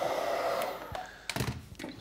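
Hair dryer blowing on low heat, then switched off and dying away within the first second. A few knocks and clicks follow as it is handled and set down.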